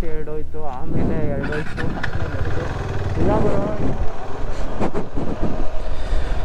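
KTM 390 Adventure's single-cylinder engine running as the motorcycle moves off along a dirt track, with people's voices over it in the first few seconds.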